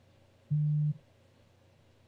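A single short, low, steady tone about half a second in, holding one pitch for under half a second and stopping abruptly.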